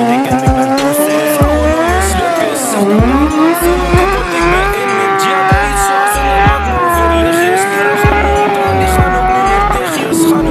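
Sportbike engine held at high revs, its pitch wavering up and down, as the rear tyre spins in a smoky burnout, over music with a heavy bass beat.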